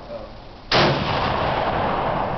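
A single shot from a Mosin-Nagant bolt-action rifle in 7.62x54R, about two-thirds of a second in. It starts very suddenly and is followed by a long, slowly fading echo.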